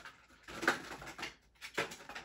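Small cardboard toy-car box being handled: two short bursts of rustling and scraping, a longer one about half a second in and a brief one near the end.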